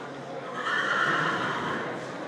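A horse whinnying: one long call that starts about half a second in and lasts over a second.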